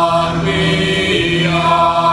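Live Nordic folk music: several voices chanting in long held tones over a steady low drone.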